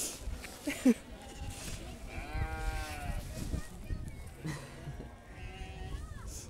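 Icelandic sheep bleating in a crowded pen. A long, wavering bleat comes about two seconds in, and a lower, fainter bleat follows near the end.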